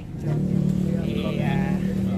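A motor vehicle engine running close by: a steady, low droning hum that comes in just after the start and holds, rising slightly in pitch.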